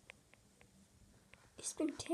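Mostly quiet, with a few faint light ticks from handling. Near the end comes a short hiss, then a voice starts a word.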